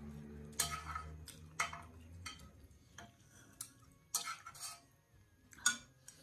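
Chopsticks clicking and scraping against a porcelain bowl and the hotpot while eating: a series of sharp, irregular clinks.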